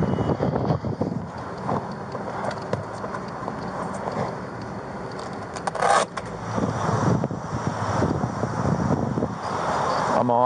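Irregular rustling and scraping of clothing and a clipboard against a body-worn camera microphone as the wearer leans and reaches into a vehicle, with a short louder scrape about six seconds in.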